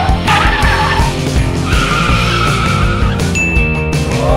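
Background music with a car-skidding sound over it: two stretches of screeching noise in the first three seconds, then a steady high beep near the end.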